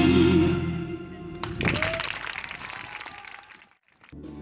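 A live band with piano and drums ends a song on a held final chord that dies away, followed by audience applause with scattered clapping that fades out near the end.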